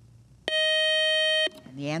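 A quiz show's time-up signal: a steady electronic beep tone lasting about a second, starting and stopping abruptly.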